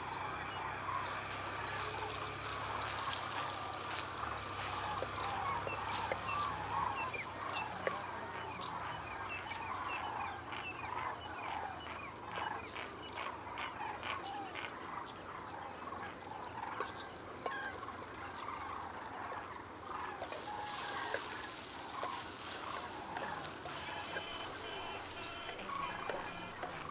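Garlic paste and then sliced okra sizzling in hot oil in a clay pot over a wood fire. The sizzle starts about a second in, cuts off suddenly around the middle and returns near the end. Birds call throughout.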